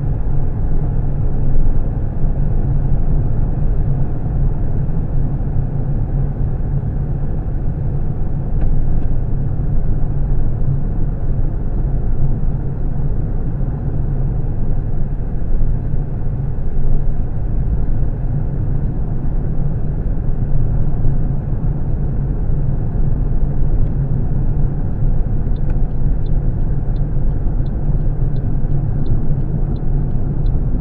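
Car cabin noise while driving on a highway: a steady low rumble of tyres and engine. Near the end a light ticking starts, about two ticks a second.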